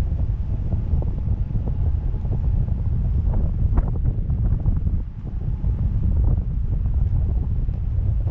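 Wind buffeting the microphone of a camera rig on a parasail in flight: a steady, loud, low rumble with a few brief clicks in the middle. It dips briefly about five seconds in.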